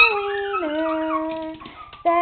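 Two chihuahuas howling together. The lower howl holds a long note that drops in pitch about half a second in, a higher howl wavers above it, and both fade out near the end.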